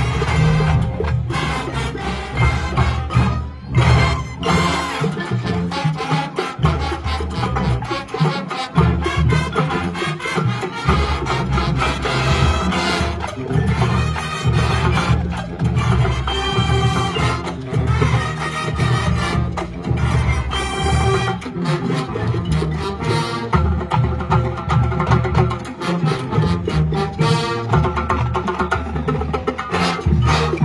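A marching band playing a Latin, salsa-style number live, with brass and a steady percussion beat.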